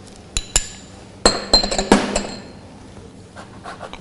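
A small metal spoon clinking against a ceramic ramekin and a stainless steel mixing bowl as spice is spooned out. Two sharp clinks come first, then a cluster of clinks with a brief metallic ring about a second in, and faint taps near the end.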